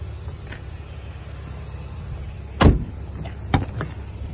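Jeep Wrangler doors being shut and opened: a loud thump about two and a half seconds in, then a sharper knock and a few latch clicks about a second later, over a steady low rumble.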